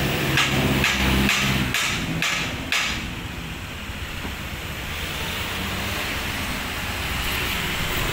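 Roadside traffic noise. For the first three seconds a vehicle engine hums low under a run of short, sharp noises, then it drops to a quieter, steady hum.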